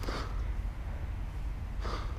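A man breathing close to the microphone: a short, sharp breath right at the start and another near the end, over a low steady rumble.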